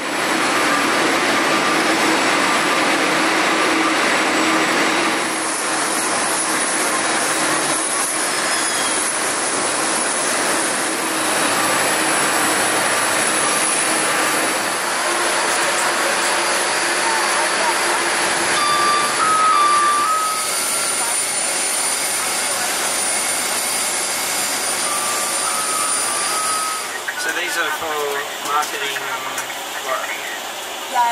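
Loud steady rushing noise of aircraft and ground equipment on an airport apron, with a high whine running through it. Short two-tone beeps sound twice past the middle, and voices come in near the end.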